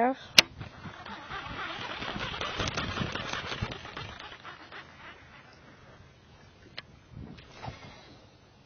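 Baitcasting reel being worked by hand to clear a backlash tangle on the spool. A sharp click comes about half a second in, then a few seconds of rapid fine ticking and rustling as line is pulled off the spool, fading away before a couple of faint clicks near the end.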